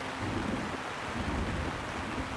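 Rough sea water rushing and rumbling: a steady wash of noise over a deep rumble.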